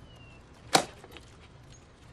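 An axe chopping into a wooden log: one sharp blow about three quarters of a second in.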